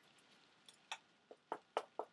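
A run of about six light, sharp clicks and taps, starting about half a second in: small hardened paper mache pieces backed with Modroc plaster bandage being handled and set down on a hard table surface.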